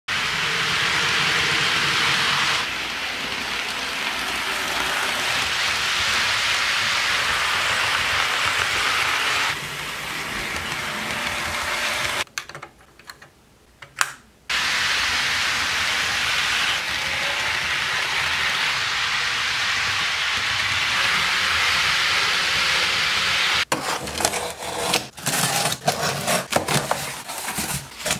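HO scale model diesel locomotive running on its track, a steady whirring, hissing mix of motor and wheel noise that shifts in tone at each cut, with a short quiet gap about halfway through. Near the end there is a quick run of sharp clicks and scrapes as a small box cutter slices the packing tape on a cardboard box.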